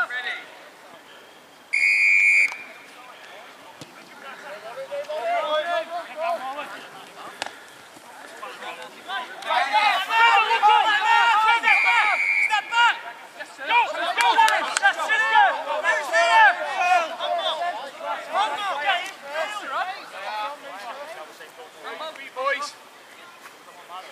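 A referee's whistle blast about two seconds in and a second, shorter blast near the middle, with several men shouting and calling over each other through the second half.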